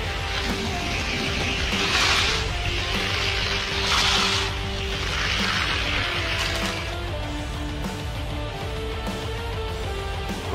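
Background music, with the rushing, rattling noise of die-cast toy cars rolling along orange plastic Hot Wheels track, swelling about two seconds in, again around four seconds and once more from about five to seven seconds.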